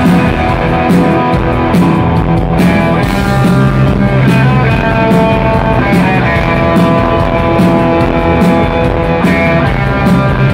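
Live rock band playing a loud surf-rock instrumental: two electric guitars, bass guitar and drum kit, with no singing, heard from among the audience in the hall.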